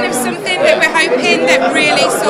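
Speech: a woman talking, with the chatter of a crowded hall behind her.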